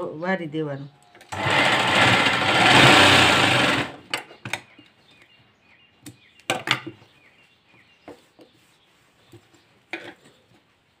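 Sewing machine stitching in a steady run of about two and a half seconds, followed by a few sharp snips of large tailoring scissors cutting through the fabric or thread, then faint rustling of cloth.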